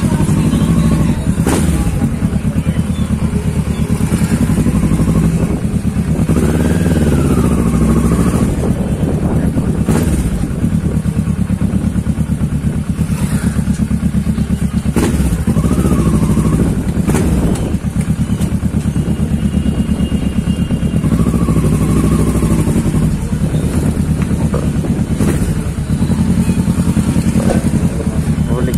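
Kawasaki Ninja 650R's parallel-twin engine running steadily at low revs as the bike creeps along at walking pace, with a few short knocks.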